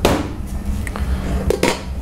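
A sharp clack as a glass pan lid is lifted off a stainless-steel counter, then a steady low kitchen rumble from the gas range running at full. Another short knock comes about a second and a half in.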